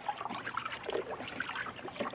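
Liquid sloshing in irregular swishes as a gloved hand stirs a plastic tub of used citric acid rust-removal solution.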